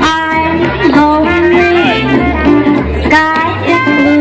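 Live jazz band playing a swing tune, long held melody notes over steady low bass notes.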